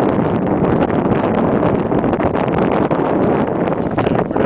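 Steady, loud wind buffeting the microphone on a small sailboat under way in a stiff breeze.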